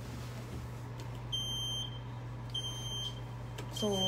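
An elevator's electronic beeper sounding three high-pitched beeps about 1.3 seconds apart, starting about a second in, over a low steady hum.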